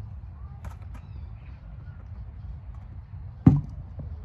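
A steady low rumble, with one sharp, loud thump about three and a half seconds in.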